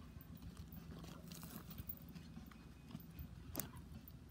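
A Doberman's front paws digging in dry dirt: faint, quick scraping and scuffing of soil, with a few small clicks of grit or stones.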